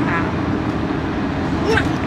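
Steady low rumble of road and engine noise inside a van's cabin.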